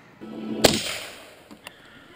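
Handling noise from a pistol and leather holster: a short rustle building to one sharp click about two-thirds of a second in, then a fainter click near the end.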